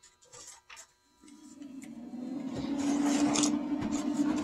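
A steady low machine hum starts about a second in and grows louder, with light rustling and knocks from a cardboard box being handled.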